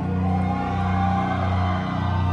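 Live rock band playing an instrumental passage: guitar and bass hold low notes that break and repeat about every two-thirds of a second, with no singing.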